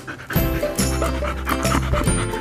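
A dog panting close to the microphone over background music with a steady bass line that comes in shortly after the start.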